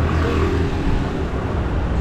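Busy street traffic, with a motor scooter's small engine running close by and fading after about a second, over the noise of passing vehicles.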